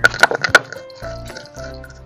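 Stone roller knocking and crushing whole dry spices on a stone grinding slab: a quick run of sharp cracks and knocks in the first half second, then quieter grinding, over background music.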